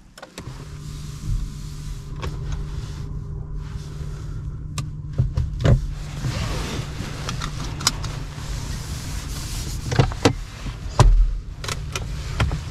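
Peugeot 508 PSE plug-in hybrid powered on with the start button: a steady low hum sets in within the first second and carries on. Over it come the rasp of the seatbelt webbing being pulled out and a series of clicks as it is buckled, the loudest near the end.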